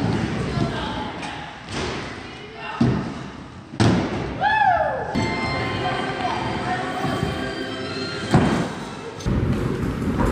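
Stunt scooter thudding and knocking on wooden skatepark ramps, with three sharp impacts about three, four and eight seconds in.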